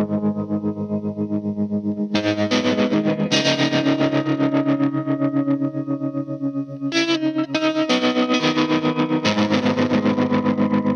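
Electric guitar playing sustained chords in a fast, even pulse of several strokes a second, the chord changing at about two, three, seven and eight seconds in, with a quieter dip just before seven seconds.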